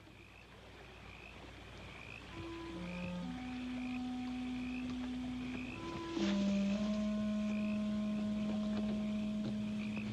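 Frogs calling in a steady rhythm of short high chirps, about two a second, under soft held low orchestral notes. The music swells gradually and rises again about six seconds in.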